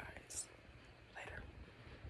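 A faint, softly voiced man: the hiss ending a word just after the start, then a short soft whispered sound a little past a second in, with room quiet between.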